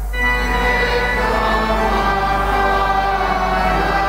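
Choir singing the recessional hymn with organ accompaniment; the voices come in over the organ right at the start, lifting the level.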